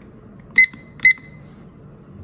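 Digital kitchen timer beeping twice, two short high beeps about half a second apart, as its buttons are pressed to reset it for a one-minute wait.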